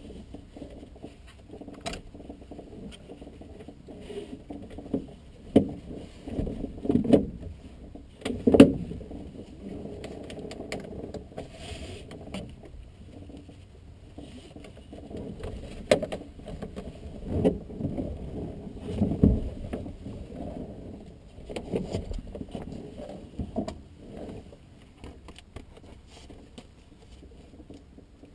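Handling noise of an aircraft seat harness being fastened: irregular rustling of straps and clothing with scattered metallic clicks and knocks, a few of them sharper.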